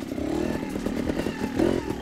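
Trials motorcycle engine running at low revs as the bike is ridden slowly over rocks, with the revs picking up briefly near the end.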